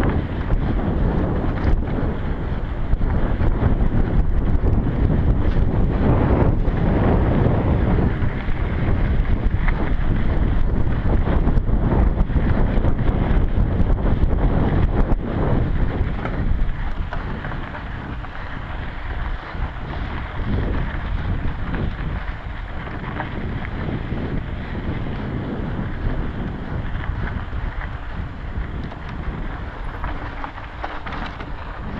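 Wind buffeting a GoPro's microphone as a mountain bike rides fast down a dirt singletrack, with scattered knocks and rattles from the bike and tyres over bumps. The rushing eases somewhat about halfway through.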